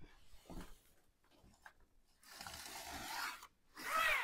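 Sliding pizza peel's conveyor belt scraping over its board as the handle is pulled back to slide a pizza off into the oven: a faint steady scraping noise lasting about a second, past the middle, after a few faint knocks.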